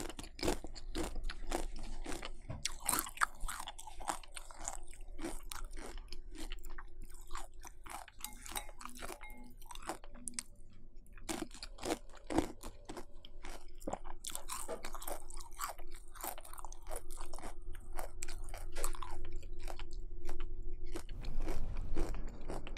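Close-miked chewing of crunchy chocolate cereal flakes softened in milk: a dense, continuous run of sharp crackling crunches.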